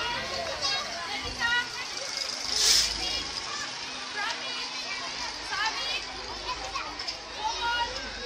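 Children's voices at play, chattering and calling, with a brief loud rush of noise about three seconds in.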